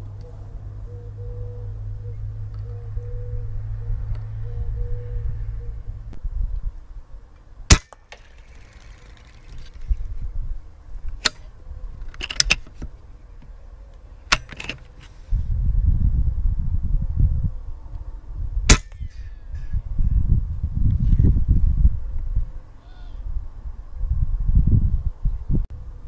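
Two sharp shot reports from a .25-calibre Umarex Gauntlet PCP air rifle, about eleven seconds apart, with a few lighter clicks between them. A low rumbling noise comes and goes in stretches.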